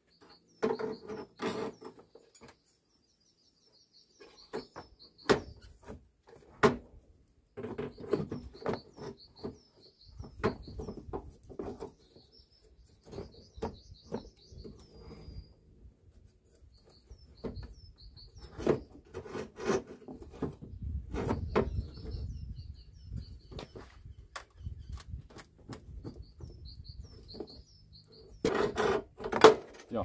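Irregular knocks and clicks, in clusters, as a cloth-padded wooden stick is levered against the inside of a Volvo V70's steel front wing to push out dents. Small birds chirp throughout.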